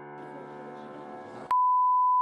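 A sustained closing chord of music fades quietly. About one and a half seconds in, a loud, steady 1 kHz broadcast test tone cuts in abruptly with the colour bars, signalling that the channel has gone off air.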